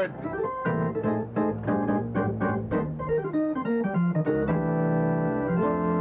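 Arena organ playing a short burst of post-goal rally music: a quick run of short, detached notes, then long held chords from about four and a half seconds in.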